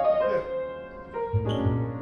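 Grand piano being played, held notes and chords changing every half second or so, with deep low notes coming in strongly about a second and a half in.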